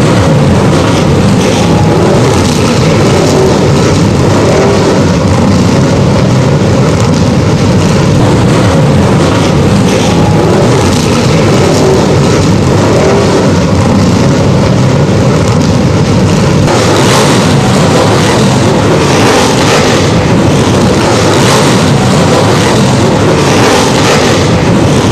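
A pack of figure-8 race cars running together at parade pace on the pre-race laps: a loud, steady, dense engine rumble that gets slightly brighter about two-thirds of the way through.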